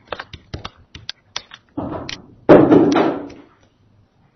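A stylus tapping and clicking on a tablet PC screen as words are handwritten, in quick irregular clicks. About two and a half seconds in comes a louder rush of noise that lasts about a second and fades.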